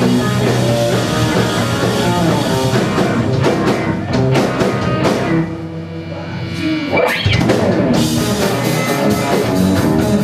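Live instrumental rock from an electric guitar, bass guitar and drum kit trio. About five and a half seconds in, the drums and cymbals drop out and sustained notes ring on. Near seven seconds a rising glide comes in, and about a second later the full band crashes back in.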